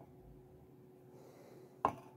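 A faint sniff of air drawn in through the nose as red wine is smelled from a wine glass, followed near the end by a single sharp knock. A faint steady hum runs underneath.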